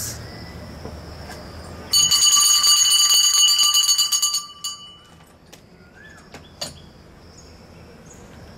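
A bell ringing with a steady, high, multi-toned ring. It starts about two seconds in, holds for about two and a half seconds, then dies away. At a dressage test this is the judge's bell signalling the rider to begin.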